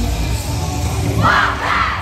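Cheer routine music with a thumping bass beat, joined about a second in by loud shouting and cheering voices as the routine ends in its final pose.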